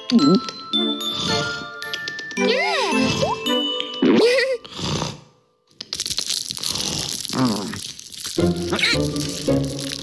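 Cartoon background music with wordless character vocal sounds. About six seconds in comes a couple of seconds of loud, noisy clattering from toys being played to make a racket.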